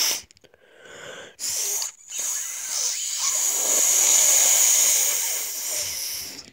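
A person forcing breath out under pressure with the nose pinched shut and cheeks puffed, making hissing, wheezy blasts of air: a short one about a second and a half in, then a long one of about four seconds.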